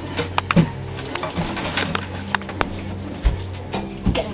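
Background music of sustained, held tones, broken by several short sharp clicks or knocks.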